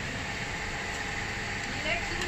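Steady hum and hiss of background noise with people talking indistinctly; a short voice comes in near the end.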